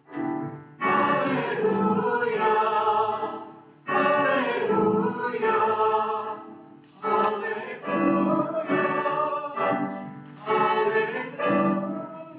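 A small mixed vocal group of one man and two women singing a sacred choral piece, in phrases of held notes with short breaks between them.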